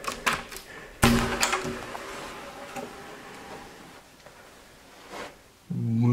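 A closet door being opened: light clicks of the latch, then a sudden thump about a second in as the door comes open, its sound fading over the next couple of seconds.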